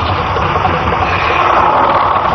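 Film fight-scene soundtrack: music score under a steady rushing sound effect, with no distinct blows.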